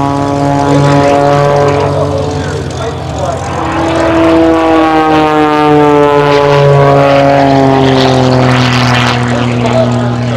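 Extra 300 aerobatic plane's propeller and six-cylinder Lycoming engine running at display power overhead. Its pitch rises about three to four seconds in, then slides steadily down through the second half as the plane manoeuvres.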